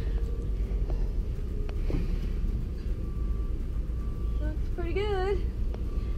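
Steady low rumble on a body-worn camera microphone, with a few light clicks as a gloved hand works at a sailboat's companionway hatch. A short wavering voice sound comes near the end.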